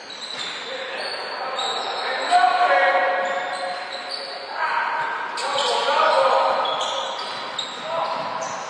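Indoor basketball game in a large echoing hall: sneakers squeaking on the court floor, the ball bouncing, and players shouting, with the shouts loudest about two and a half seconds in and again around five to six seconds.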